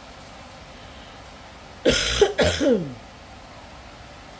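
A person coughing twice in quick succession about two seconds in: two loud, harsh coughs about half a second apart.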